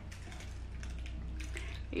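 Faint, scattered clicking mouth sounds of a person chewing a piece of chocolate, over a steady low hum.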